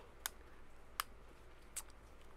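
Three faint plastic clicks, less than a second apart, as the dome of a 6-inch R2-D2 action figure is turned by hand; turning the dome works the mechanism that extends the figure's third leg.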